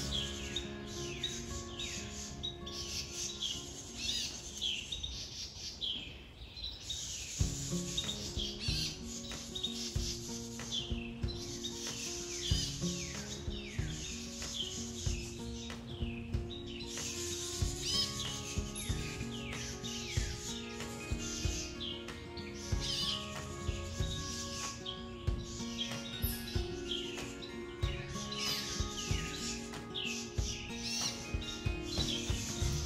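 Birds chirping over and over in short, quickly falling notes, with soft background music of held notes underneath.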